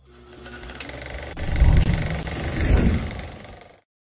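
Channel logo intro sound effect: rapid clicking over a deep rumble that swells to a peak in the middle and then cuts off abruptly near the end.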